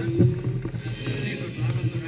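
A race car engine running at a steady low pitch, with people talking nearby.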